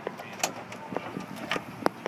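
Key working the trunk lock of a 1998 Ford Escort ZX2 and the lid latch releasing as the trunk is opened: a series of sharp metallic clicks, the loudest about half a second in and near the end.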